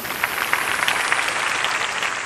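Concert audience applauding at the end of a song: many hands clapping in a dense, steady patter.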